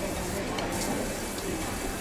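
Steady background noise of a busy juice stall with faint, indistinct voices.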